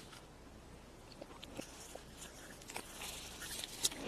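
Faint scattered clicks and rustles of a small plastic toy, its foil wrapper and a plastic capsule being handled.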